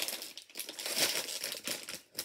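Plastic blind-bag packet crinkling and rustling in the hands as it is worked open, in uneven crackly bursts with a short lull about half a second in.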